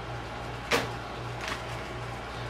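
Wires and connectors being handled on a sheet-metal bench: one sharp light click about three-quarters of a second in and a fainter one later, over a steady low hum.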